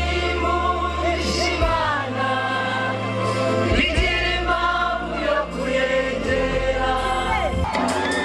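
Live gospel music: a lead singer and a group of backing singers singing together over a band with keyboard, guitars and bass.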